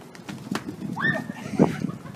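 Footsteps and knocks on wooden boardwalk planks as a woman drops to the boards in a staged fall. The loudest knock comes just after a second and a half in. A high, drawn-out cry starts about a second in.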